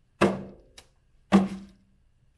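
Large barrel drum with a tacked head struck with the palms twice, about a second apart, each stroke a deep tone that fades, with a faint tap between: the steady beat of a chant.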